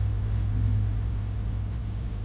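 A steady low rumble with a faint hiss over it.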